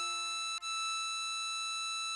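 Diatonic harmonica melody notes: the hole-8 blow note E6 sounded twice, a short note and then, after a brief break about half a second in, a long steady held note.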